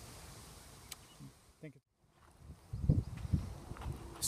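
Faint outdoor background that drops out briefly near the middle, then a low, uneven rumble of wind buffeting the microphone on a breezy day.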